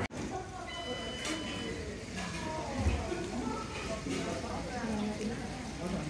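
Pub room background: a low murmur of indistinct chatter from other customers, with a brief steady high tone about a second in.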